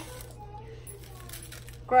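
Crushed red chili flakes being shaken from a spice container onto raw potato wedges in a plastic bowl, a faint light rattle and patter of small scattered clicks.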